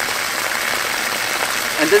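Water running from the three valve outlets of a pumped water line and splashing onto the ground in a steady hiss; the pump has just switched on and the line's pressure is building.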